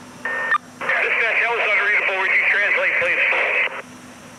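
Fire-department radio transmission over a narrow-band speaker: a short key-up burst with a brief steady beep, then about three seconds of garbled voice traffic.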